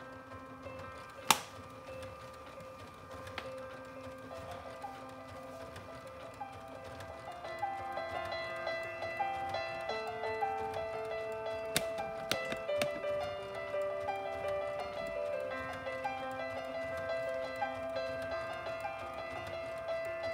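Solo piano music played back from the Lego Powered Up app on an iPad speaker. A melody of single notes over held lower notes starts softly and grows louder after about seven seconds, with a few sharp clicks along the way.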